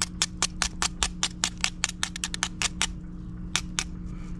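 Knife blade scraping barnacles off a mussel shell in quick, sharp strokes, about six a second, pausing briefly a little after three seconds in before starting again.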